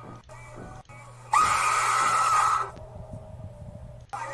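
Jump-scare scream from a screamer prank video: after a quiet stretch, a sudden, very loud harsh shriek blares about a second in, lasts about a second and a half and cuts off abruptly.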